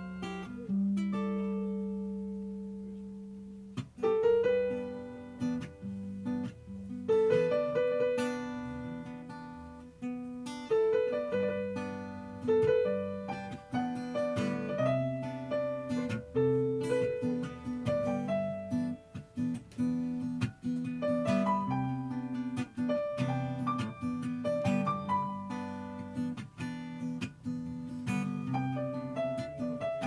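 Instrumental duet of electronic keyboard and guitar, with no singing. A held chord near the start rings out and fades for a few seconds, then both instruments take up a steady plucked and chorded pattern.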